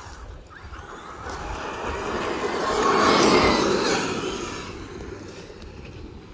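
Large brushless electric Traxxas RC truck passing close by on pavement: motor whine and tyre noise swell to a peak about three seconds in, then fade as it drives away.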